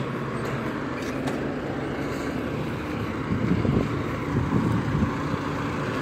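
Engine of a large forklift running steadily as it drives up close, carrying a stack of crushed car bodies, a little louder in the second half.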